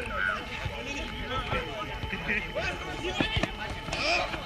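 Players' voices calling out across a football pitch, with a few sharp thuds of the ball being kicked a little past three seconds in.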